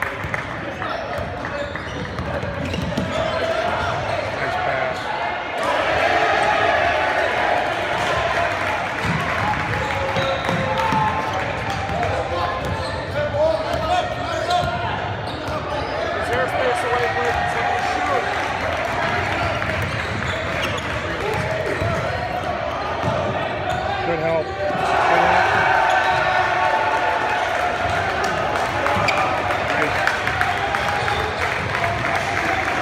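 Basketball game in a large, echoing gymnasium: the ball bouncing on the court amid a steady din of indistinct voices from players and spectators.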